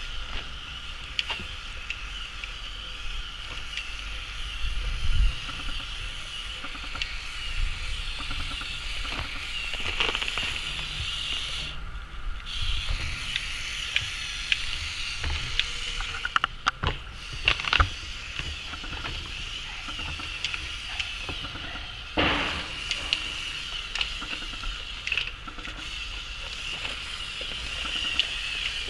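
Lego Technic remote-control trial truck's XL drive motor and gear train whining steadily, cutting out briefly near the middle. Occasional sharp knocks and clatters come through as the plastic truck climbs over wood scraps.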